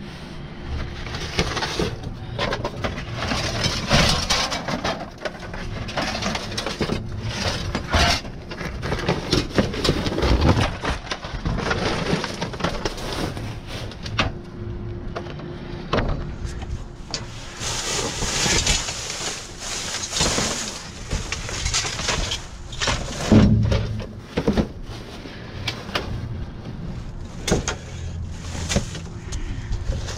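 Rummaging through dumpster trash: paper, cardboard and plastic bags rustling and scraping, with frequent knocks and clatters as items such as frame mouldings are shifted, and a stretch of louder rustling about two-thirds through.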